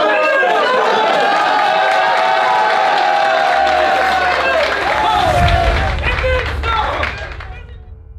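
A group of men shouting and cheering, with one long drawn-out yell and some clapping. A deep bass from music comes in about three and a half seconds in, and everything fades out near the end.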